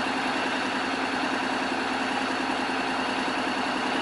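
Honda X-ADV's parallel-twin engine idling steadily.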